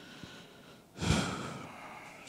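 A man's breath into a handheld microphone: a sudden breathy hiss about a second in that fades away over most of a second, heard against low room noise.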